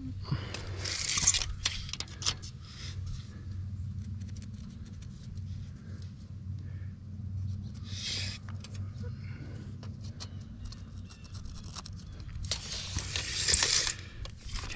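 Rustling and light clicks of hands handling a tape measure and marking with a pen on roofing membrane, with louder rustles about a second in, midway and near the end, over a steady low hum.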